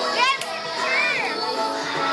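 Young children's voices shouting and chattering over background music, with two short rising-and-falling cries, one just after the start and one about a second in.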